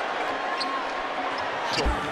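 Basketball game audio from the arena: a steady crowd din, with one basketball bounce on the hardwood court near the end.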